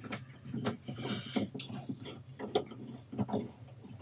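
Faint, irregular small clicks and metallic scrapes of a threaded coax F-connector being unscrewed by hand from a patch panel port, over a steady low hum.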